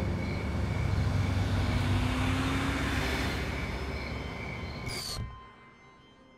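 A low rumbling whoosh like a passing vehicle, swelling toward the middle and fading away about five seconds in, with a few held tones under it.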